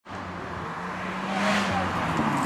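Alpine A110 sports car driving hard uphill towards the listener, its engine note steady and growing louder as it approaches.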